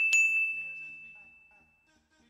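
A bell sound effect dings twice in quick succession, ringing out bright and clear and fading away over about a second and a half. This is a notification-bell sting, over faint background music.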